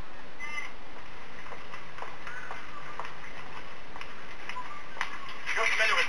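Steady background hiss with a few faint, short pitched calls in the first half; a man's voice starts near the end.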